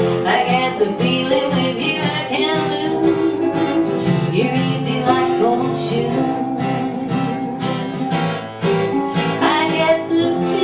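Acoustic guitar and electronic keyboard playing a song together, live.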